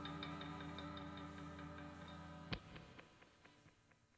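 Quiet ambient background music of sustained low tones over a steady, clock-like ticking of about four ticks a second. A single sharp click comes about two and a half seconds in, after which the music fades away.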